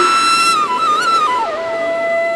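Instrumental intro of a Nagpuri song: a solo flute melody plays a few short notes around one pitch, then drops to a lower note and holds it.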